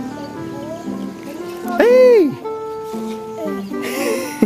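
Background music with steady held notes; about halfway through, a child's loud high squeal rises and falls for about half a second, a reaction to a fake falling caterpillar.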